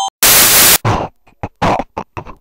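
A loud burst of static-like white noise, about half a second long, that cuts off abruptly, followed by a quick run of short, choppy noise bursts.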